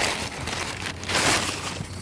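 Brown kraft packing paper crinkling and rustling as it is pulled out of a cardboard box, loudest a little after a second in.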